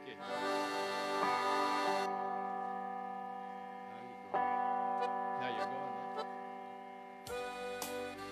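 Electronic arranger keyboard (Yamaha PSR-S950) playing a few long held chords, each fading slowly. About seven seconds in, a drum beat and fuller backing start up.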